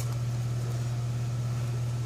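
Steady low background hum, unchanging in level and pitch, with a faint hiss over it.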